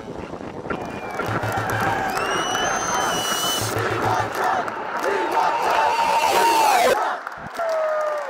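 A large crowd cheering and whooping, with high whistles rising above it and a low beat pulsing underneath every couple of seconds. The cheering cuts off abruptly about seven seconds in.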